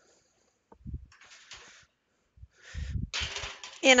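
A tray of cookies being put into a kitchen oven: a dull thump about a second in and another near three seconds, each followed by a stretch of hissy, scraping noise. A woman starts speaking at the very end.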